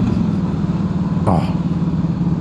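Harley-Davidson Heritage Softail's Twin Cam V-twin engine running steadily at road speed, heard from the rider's seat over wind rush.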